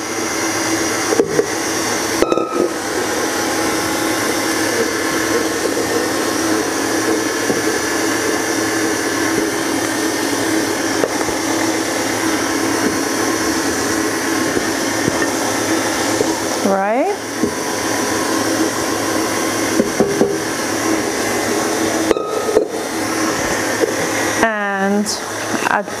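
Electric stand mixer running steadily at one speed as it mixes a butter and egg-white cookie batter, with a few light clicks of a spatula against the bowls near the start.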